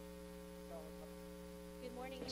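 Faint, steady electrical mains hum: a low buzzing drone made of several steady tones.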